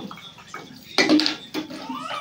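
Water splashing as dishes are rinsed by hand, with a louder splash and clatter about a second in.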